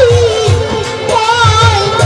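A woman singing a Baul song in Bengali into a microphone, holding long notes with a wavering vibrato, over a steady low drum beat of a few strokes a second.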